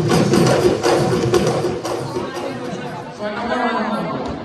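A large group of Bihu dhol drums beaten together in rhythm, fading out about halfway through, followed by a crowd's chattering voices.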